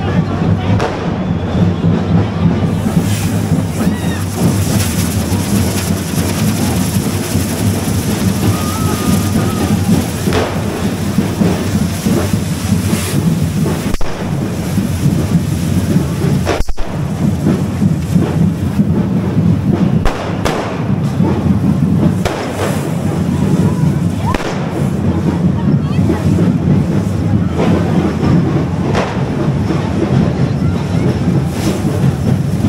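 Correfoc fireworks (hand-held carretilles spraying sparks) hissing and crackling steadily, with several louder bangs. Underneath are a constant low rumble and crowd voices.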